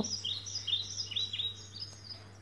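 Small birds chirping: a rapid series of short rising chirps, about five a second, growing fainter toward the end, over a faint steady low hum.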